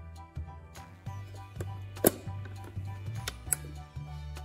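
Background music, with a sharp plastic click about halfway through and a lighter one near the end, as a miniature toy oven's door is shut on a tiny cup.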